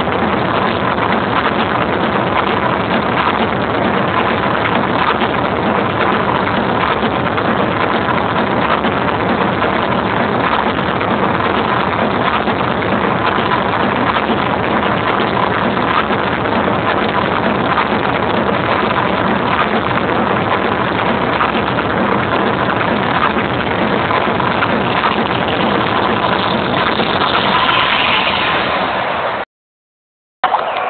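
Very loud electronic dance music from an arena sound system, overloading the camera's microphone into a dense, distorted wash. It cuts off abruptly near the end.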